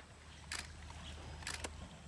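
Water splashing as Asian elephants slosh and spray waterhole water with their trunks: a few short splashes, about half a second in and twice near a second and a half, over a low steady hum.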